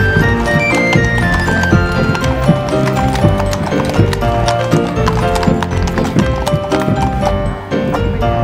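Music playing throughout, with horses' hooves clip-clopping on a paved road.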